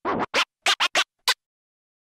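Radio station sign-off sting: a quick run of about six short DJ turntable scratches, then it cuts off to silence.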